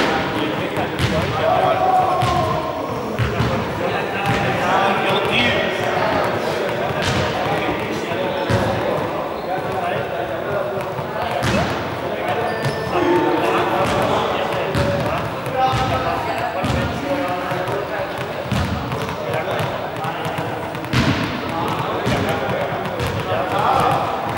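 Indistinct voices echoing in a large sports hall, with scattered sharp thuds of balls hitting the hard floor.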